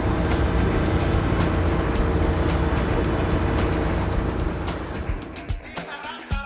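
A passenger boat's engine running steadily under wind and water noise, with music mixed in. The sound fades down near the end.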